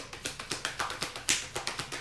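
A deck of oracle cards being shuffled by hand: a quick run of soft card slaps and flicks, several a second, loudest a little past halfway.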